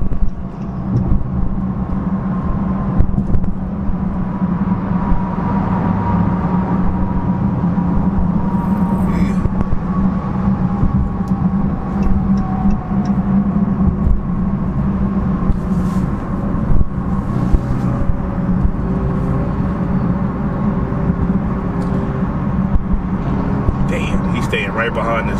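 Dodge Charger SRT Hellcat Widebody's supercharged V8 cruising at a steady highway speed, heard from inside the cabin as a steady low drone under road noise.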